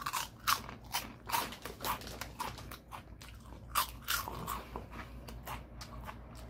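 A person chewing a crunchy snack, with crisp crunches about twice a second.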